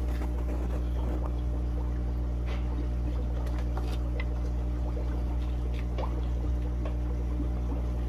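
Steady low electric hum with faint bubbling and trickling water from an aquarium's air-driven sponge filter and bubbler, with a few small clicks.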